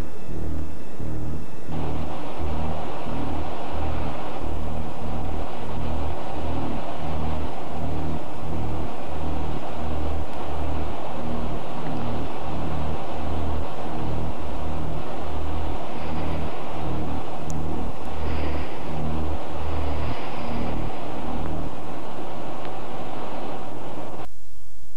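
Film soundtrack: a low bass pulse beating about twice a second under a loud, hissy, distorted wash. The pulse drops out near the end.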